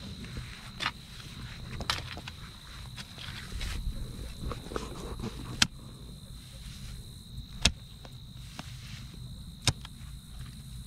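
A long-handled hand hoe chopping into dry soil: a few sharp strikes a second or two apart, with softer scrapes between them.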